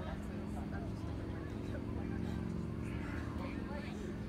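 A steady low hum, as of a motor running, under faint scattered voices.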